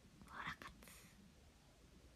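A woman's brief, faint whisper about half a second in, then near silence.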